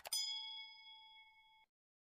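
A quick click followed by a bright, bell-like notification ding, the sound effect of tapping a subscribe bell. It rings on for about a second and a half, fading, then cuts off suddenly.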